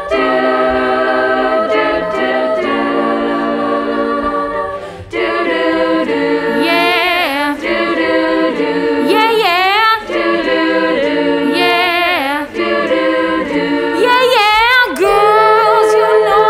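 Female a cappella group singing live without instruments: close sustained chords for the first five seconds, then after a short break a solo voice sings wavering runs up and down over the group's backing harmonies.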